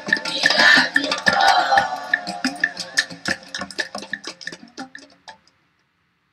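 Children's voices over quick clicking percussion. The voices drop away after about two seconds; the clicks thin out and stop about five seconds in.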